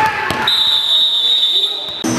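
A handball bounces on the sports-hall floor amid voices. About half a second in, a referee's whistle blows one long, steady, high blast that lasts over a second and stops play.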